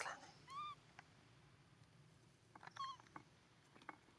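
Pig-tailed macaque giving two short squeaky coo calls, each arching up and down in pitch, about half a second in and again near three seconds in, with a few faint clicks between them.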